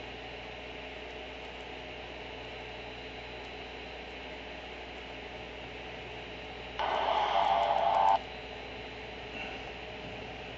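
Steady hiss and hum, with a short snatch of media audio from the phone's small speaker about seven seconds in that lasts under a second and a half and cuts off abruptly, as streamed playback starts and stalls.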